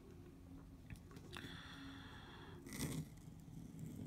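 Steel G nib in a bamboo dip pen scratching across paper as a looping stroke is written. It is faint, with a scratchy stretch near the middle and a short, sharper rasp a little later.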